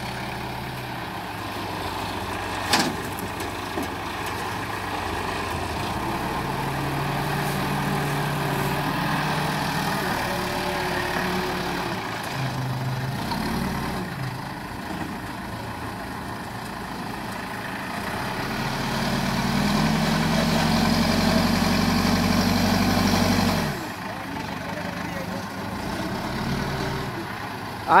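CASE 770 backhoe loader's diesel engine running and working the front loader bucket, its speed rising and falling. It grows louder for a few seconds about two-thirds of the way through, then drops back abruptly. A single sharp knock comes about three seconds in.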